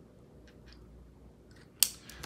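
Faint scratching of a pen on paper, then one sharp click near the end as a pen's cap is snapped shut.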